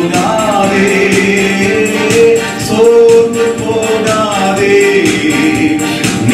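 A man singing a Christian worship song into a microphone, with long held notes, over musical accompaniment with a steady percussion beat.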